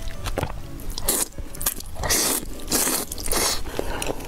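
Noodles slurped from chopsticks in short hissing pulls, one just after a second in and then three close together, with chewing and small mouth clicks between.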